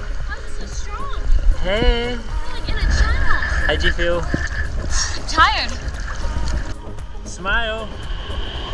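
Background music with a woman's voice coming in a few short times, over splashing and the low wash of shallow sea water around a scuba diver swimming toward shore.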